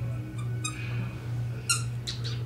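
Two short, high-pitched yips from a Havanese puppy, about a second apart, over a steady low hum.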